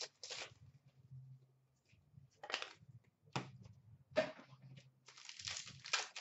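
Trading cards being handled: a few short scrapes as cards slide against one another, then a longer rustle near the end. A faint low hum runs underneath.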